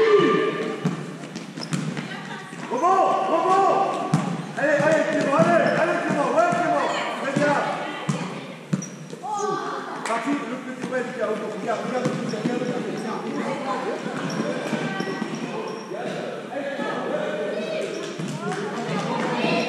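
A basketball dribbled and bouncing on a sports-hall floor, with boys' voices calling and shouting over it, all echoing in the large hall.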